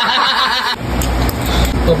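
A man's loud, drawn-out wail, a wavering cry that breaks off under a second in. A low, steady hum of background noise follows.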